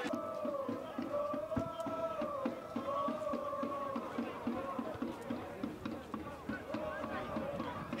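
Faint soccer-ground ambience: distant voices of spectators and players, with a drawn-out, wavering chant-like call and a faint regular pulse about four times a second.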